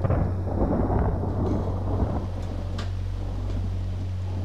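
A dense, irregular rumbling noise that fades out about two seconds in, over the steady low drone of the folk-song accompaniment between sung lines.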